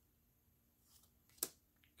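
Near silence with one short, sharp snap of a trading card about a second and a half in, as a card is slid off the front of a handheld stack.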